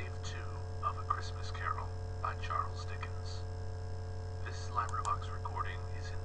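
Faint, indistinct audiobook narration played back from a computer, over a steady low mains hum. A light click or two near the end.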